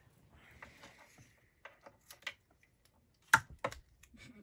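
Handling noise as small classroom items are picked up and set against a chart: a soft rustle, then a few light clicks, and two sharp clicks near the end.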